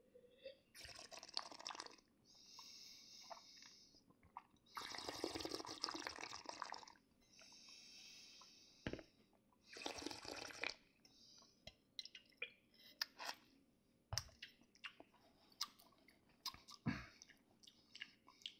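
A taster aerating a mouthful of wine: quiet slurps of air drawn through the wine and swished around the mouth, the longest about five seconds in. After that come faint scattered mouth clicks and a soft knock.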